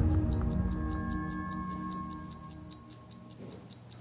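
A mechanical wristwatch ticking rapidly and evenly, about five ticks a second, under sustained dramatic underscore music that fades away over the first three seconds.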